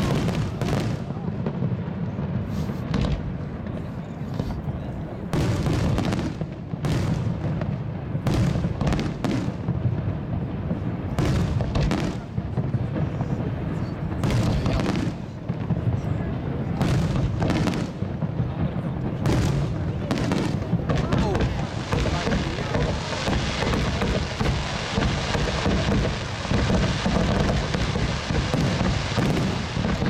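Fireworks finale: a rapid succession of shell bursts and bangs over a steady low rumble, building about two-thirds of the way in into a dense, unbroken barrage of explosions.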